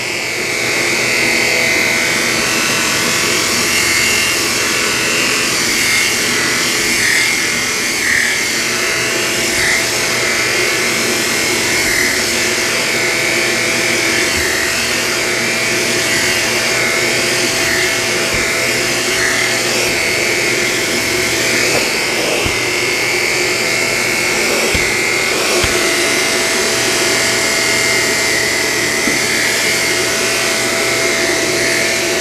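Shark Apex Powered Lift-Away DuoClean with Zero-M upright vacuum running on a low-pile rug: a steady motor whine and rush of air as the dual-brushroll power nozzle is pushed back and forth. The note shifts briefly about two-thirds of the way through.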